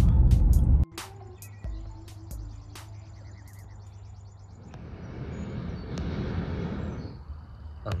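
Car cabin road rumble that cuts off under a second in. After that comes a quiet outdoor stretch with a low steady hum. From about halfway, a steady rushing roar swells up and fades near the end, fitting a hot air balloon's propane burner firing.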